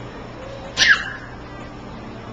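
A young child's brief, high-pitched squeal, with a quick falling tail, once about a second in.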